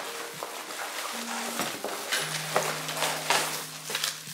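Plastic wrapping crinkling as a bundle of plastic-wrapped metal silverware is handled, with a few light ticks. Soft background music with held notes plays underneath.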